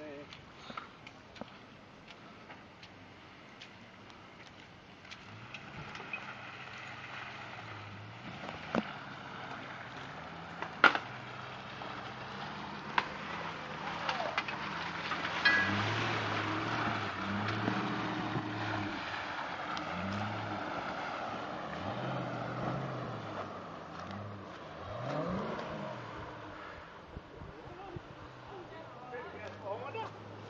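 Jeep Grand Cherokee WJ engine working through a muddy swamp track, its revs rising and falling; it grows louder past the middle as the vehicle comes close, then fades as it moves off. A sharp crack about eleven seconds in.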